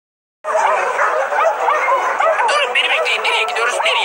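Several dogs barking and yipping together in a busy, overlapping chorus that starts suddenly about half a second in.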